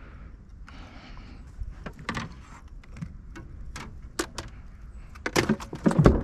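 Scattered light knocks and clicks of gear being handled in a small jon boat, with a quicker run of louder knocks near the end.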